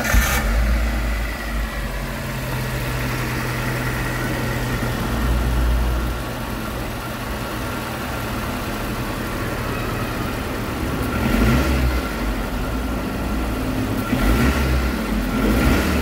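Suzuki car engine running rough at idle, its level swelling briefly a few times: a misfire traced to a failing ignition coil.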